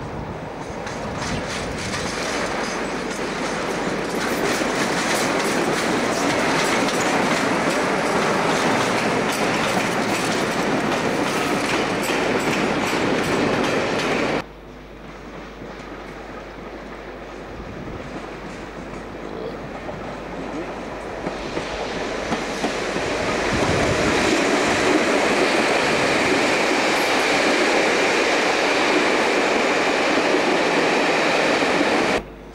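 A Class 47 diesel locomotive and its train passing, the noise building over several seconds. After a sudden cut, Class 86 electric locomotive 86251 and its coaches approach over the pointwork and pass close, with clicks of wheels over the rail joints and points.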